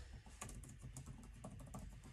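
Typing on a computer keyboard: a quick, faint run of key clicks.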